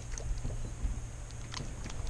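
Low wind rumble and water lapping against a houseboat hull, with a few faint light clicks.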